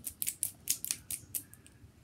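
Quick, irregular clicks and ticks from tangled wired earbuds and their cord being shaken and picked apart by hand, about ten sharp clicks in two seconds.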